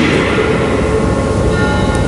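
Steady background noise, a low rumble with hiss and a few faint held hum tones, running evenly through a pause in speech.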